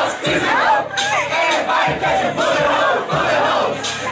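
A packed crowd of partygoers shouting and yelling over one another, many voices at once.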